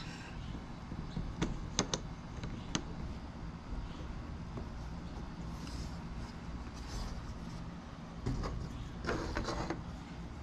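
Bamboo sticks of a wooden box puzzle clicking and knocking against each other a few times in the first three seconds, then brief scraping and rubbing as sticks are slid and pressed into place, over a steady low hum.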